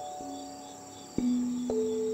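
A steady chorus of crickets chirping, a high trill with pulsing chirps, under slow, soft background music whose sustained notes are struck singly, three times, the loudest and lowest about a second in.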